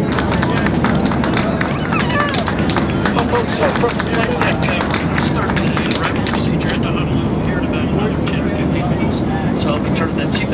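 Many passengers talking and exclaiming at once inside a jet airliner's cabin, over the steady rumble of the engines and air, with scattered sharp clicks or claps through the babble.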